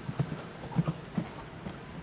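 Hoofbeats of a horse cantering close by on sand arena footing: dull thuds in the uneven beat of the canter, which thin out after about a second and a half as the horse moves away.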